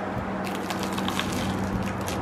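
Crusty French bread crunching as it is bitten and chewed close to the microphone: a dense run of sharp crackles starting about half a second in.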